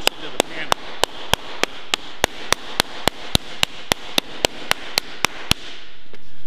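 A flat hardwood slapper striking a flat sheet of low-carbon steel laid on a lead-shot bag, in a steady run of sharp slaps about three a second that stops shortly before the end. The even, overlapping blows are stretching the panel to raise a shallow curve in it.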